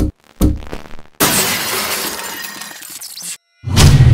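Glass-shattering sound effect in a logo intro: a few short choppy hits, then a sudden burst of breaking glass about a second in that fades over two seconds. Near the end comes a loud impact with a deep boom.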